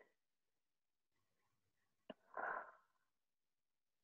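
Near silence, broken about two seconds in by a click and then a short breathy burst from a person close to a microphone, sneeze-like.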